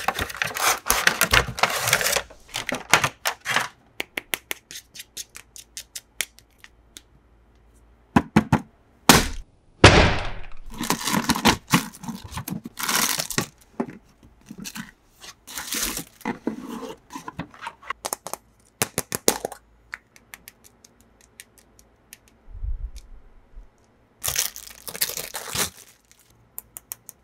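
Toy packaging being opened by hand: tearing and crinkling of wrapping in several bursts, with many small sharp clicks and cracks in between.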